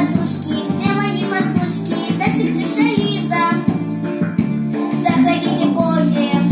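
A young girl singing a pop song over a recorded instrumental backing track.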